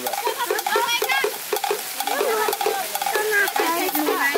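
Water pouring from a spout onto a small toy water wheel and splashing steadily into a shallow pool, with a bubbling, warbling sound.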